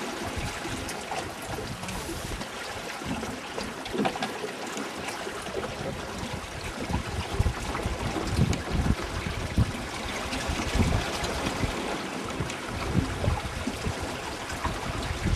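Water rushing and splashing along the wooden hull of a Welsford Pathfinder yawl sailing through choppy water. From about halfway, gusts of wind buffet the microphone.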